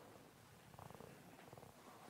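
Near silence: room tone, with a faint, fine buzzing texture from a little under a second in.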